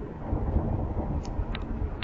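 Low, steady rumble of road and tyre noise heard inside a car cabin at motorway speed, with two faint clicks about a second and a half in.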